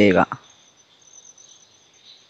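A spoken word trails off at the start, then a pause with faint background hiss and a thin, steady high-pitched tone.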